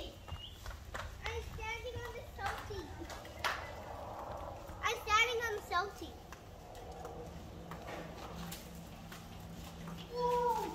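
Young children calling out and playing, with two bursts of high, sliding vocal cries about two and five seconds in. A faint steady hum sits underneath in the second half.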